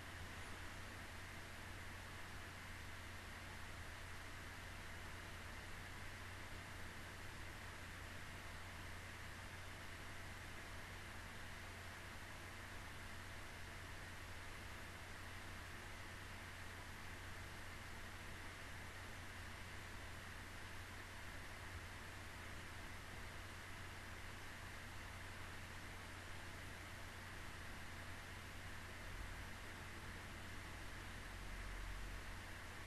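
Faint steady hiss with a low hum: the microphone's noise floor, room tone.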